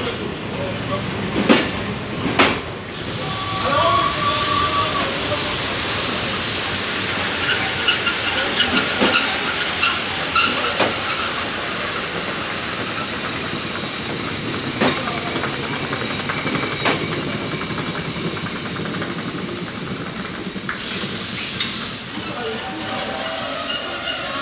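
Passenger coaches of a PKP Intercity TLK train rolling past a platform, their wheels knocking over rail joints with short squeals. There are two bursts of hissing, one about three seconds in and one near the end.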